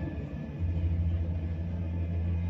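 A deep, steady drone in ominous background music, coming in about half a second in and holding, played through a laptop's speakers.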